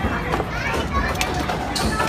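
Young children's voices and chatter over arcade game-room noise, with a couple of light knocks.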